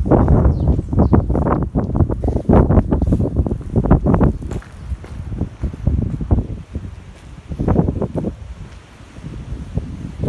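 Wind buffeting the microphone in irregular gusts, loudest in the first half.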